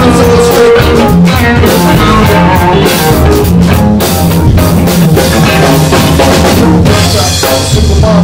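A live band playing an instrumental passage: electric guitar over electric bass and a drum kit keeping a steady beat.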